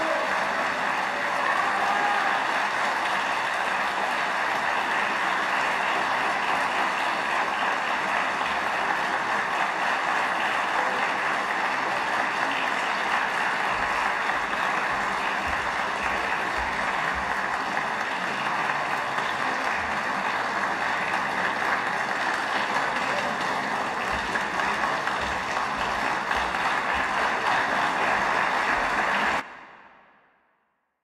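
Large audience applauding steadily in a reverberant concert hall; the applause cuts off suddenly near the end.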